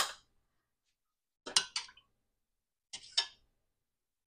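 Light clinks and knocks of a small glass and kitchen things being handled on the counter, in two quick pairs about a second and a half apart.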